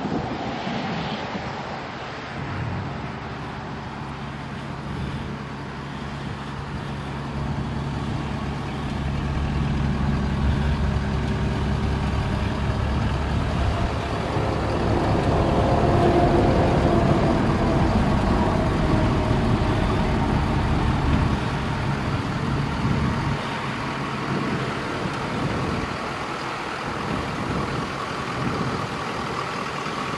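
Ford 6.7-litre Power Stroke V8 turbo-diesel idling steadily, growing louder for a stretch in the middle and easing off again toward the end.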